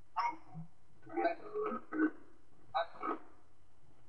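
A person's voice from the video clip being edited, played back in three short bursts with pauses between, over a faint steady hum.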